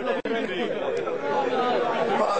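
Speech only: a man talking into a microphone, with a brief click and dropout shortly after the start.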